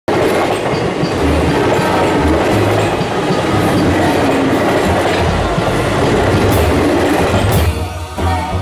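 Train running on rails: a steady, loud rumble that starts suddenly out of silence and drops away near the end.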